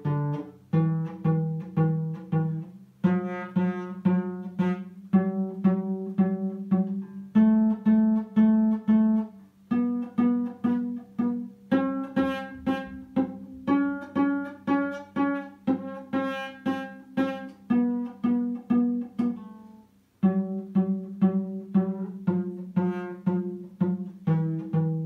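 Acoustic cello played pizzicato: a slow D major scale plucked stepwise up and back down, each note plucked several times in a steady rhythm. There is a brief pause just before twenty seconds in.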